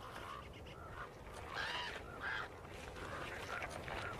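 Common ravens calling at a wolf kill: a series of short, hoarse croaks, the loudest about halfway through.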